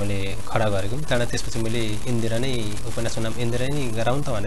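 A man speaking Nepali in conversation: continuous talk with no other sound standing out.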